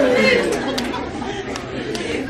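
Low chatter of several audience voices in a large room, quieter after louder voices just before.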